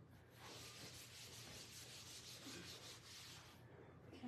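Faint, quick back-and-forth rubbing of an applicator pad on leather upholstery as conditioner is worked into the side of a leather chair. The strokes stop shortly before the end.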